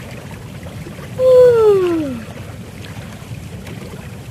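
Hot tub jets churning the water with a steady bubbling rush. About a second in, a loud pitched sound slides down in pitch for about a second over it.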